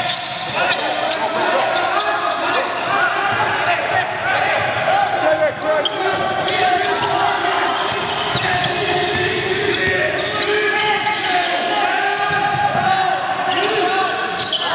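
A basketball dribbled on a hardwood gym floor during live play, under continuous calling and chatter from players and the sideline.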